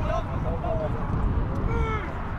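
Distant shouts and short calls from football players on the pitch, a few brief cries with the loudest one near the end, over a steady low rumble, likely wind on the microphone.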